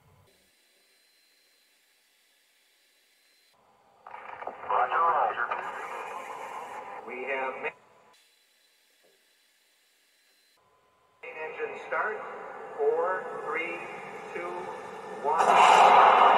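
A film's soundtrack with voices, played through a computer's small speakers, so it sounds thin and radio-like. It cuts out into silence twice, for a few seconds each time: the video stalls and stutters on the slow Pentium 4 computer.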